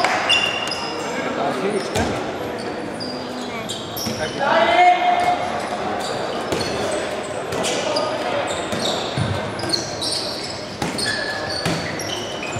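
Indoor handball game: a handball bouncing on the wooden court floor, sneakers squeaking, and players and spectators shouting, all echoing in a large sports hall. One shout stands out about four to five seconds in.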